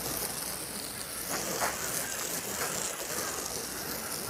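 Garden hose nozzle spraying water onto a rubber RV roof, a steady hiss, rinsing off the roof cleaner.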